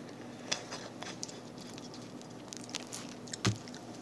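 Faint mouth sounds of a person tasting a spoonful of sauce: scattered soft lip smacks and clicks, with one louder low thump about three and a half seconds in.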